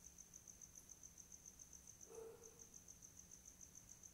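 Near silence, with a faint, high-pitched tone pulsing evenly about seven times a second, and a brief faint blip about two seconds in.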